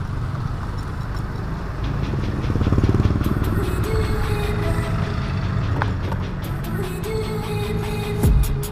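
Motor scooter running steadily while riding through town traffic, its engine and road noise a dense low rumble mixed with wind rush on the camera microphone, a little louder about three seconds in.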